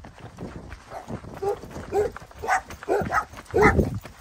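Dogs barking, a run of short barks about two a second that grow louder toward the end.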